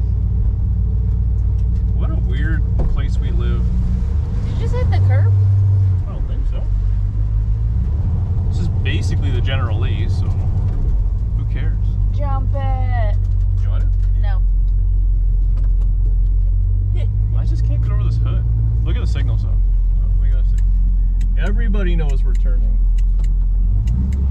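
1968 Plymouth Satellite's V8 engine and drivetrain droning steadily while driving, heard from inside the cabin. The engine note swells briefly about five seconds in and drops off suddenly at six seconds.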